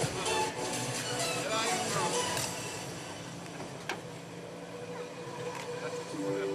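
Voices and background music from a public-address system, the voices fading and the sound growing quieter about halfway through, with one sharp click near the middle.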